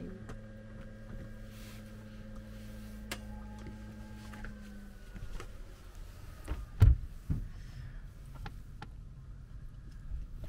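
Truma motorhome heater just switched on and running, a steady low hum with a higher tone that stops about halfway; it is not yet blowing warm air. A single thud about two-thirds of the way in.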